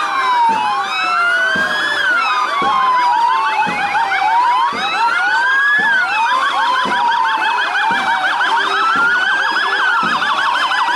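Several fire brigade vehicle sirens sounding at once, their slow rising-and-falling wails overlapping. A fast yelping siren grows stronger through the second half.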